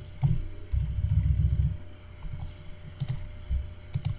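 Scattered computer keyboard and mouse clicks as shapes are moved on screen, with a low muffled rumble for about a second, starting just under a second in.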